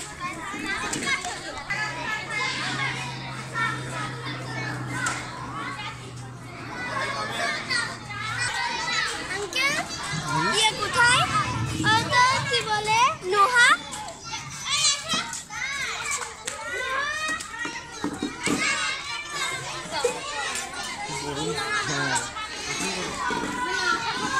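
Many children's voices chattering and calling out over one another, the sound of a crowd of children at play. A low steady hum runs underneath for the first several seconds.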